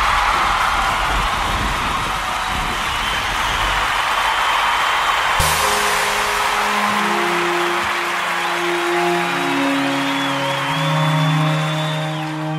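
Ambient music intro: a wash of noise over a low rumble, then slow, held notes come in about halfway through and carry on.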